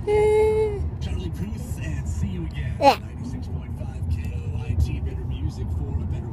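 Steady low rumble of a moving vehicle, with indistinct voices. About three seconds in comes a brief, sharp squeal that falls steeply in pitch.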